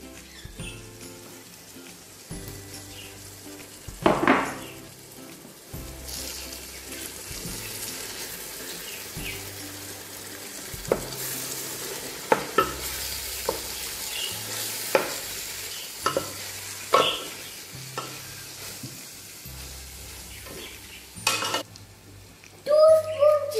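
Biryani masala sizzling in a large metal pot as chopped mint and coriander leaves are stirred in with a wooden spoon. The sizzle grows from about six seconds in, and in the second half the spoon knocks against the pot several times.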